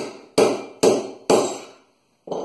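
Three sharp strikes on the spine of a 52100 steel knife, about half a second apart, each ringing briefly as the thin edge is driven into an aluminum rod in an edge-toughness test.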